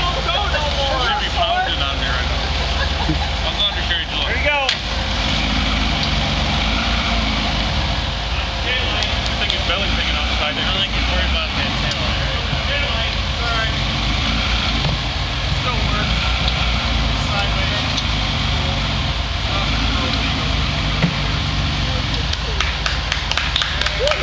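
Off-road Jeep engine running steadily, with onlookers' voices talking over it.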